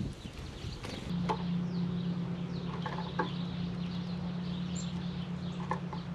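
Outdoor ambience at a bird feeder: faint high bird chirps and a few sharp taps. From about a second in there is a steady low hum.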